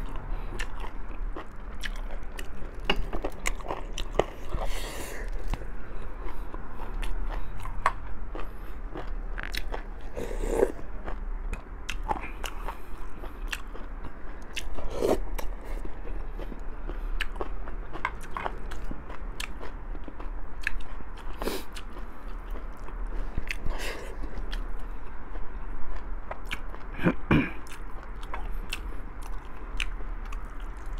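A person chewing and biting boiled pork ribs and sinigang close to a clip-on microphone: a continuous run of wet smacks and short mouth clicks, with a few louder mouth sounds spread through.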